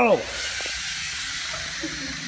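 Several LEGO Mindstorms sumo robots' small electric motors and gear trains whirring together in a steady drone as they drive into the ring and push against each other. The end of a shouted "go" falls off right at the start.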